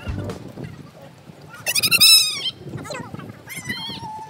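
A young child's high-pitched, wavering squeal about two seconds in, followed by a shorter vocal call near the end.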